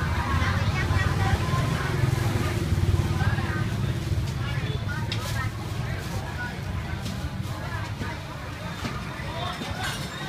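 Busy street ambience: people talking in the background over a steady low rumble of traffic, with a short sharp click about five seconds in.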